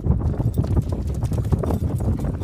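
Quick, uneven patter of footfalls thudding on wet sand.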